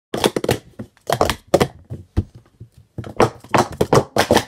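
Plastic Speed Stacks sport-stacking cups clattering as they are rapidly stacked up and brought back down in a 3-3-3 run. Quick clusters of sharp clicks and taps come in short bursts with brief pauses between them, and the clicking is busiest in the last second.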